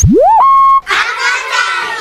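Jingle sound effects: a rising whistle-like glide that settles on a short held tone, then, about a second in, a noisy burst of many children's voices.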